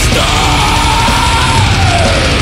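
Black metal band playing live: distorted guitars and fast, dense drumming under one long yelled vocal line held for about two seconds, rising slightly and then falling away near the end.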